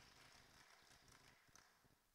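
Near silence: faint congregation applause dying away, heard only distantly in the sermon mix.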